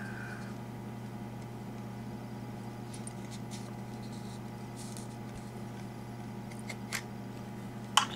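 Steady low electrical hum with a few faint light clicks, the sharpest about seven seconds in.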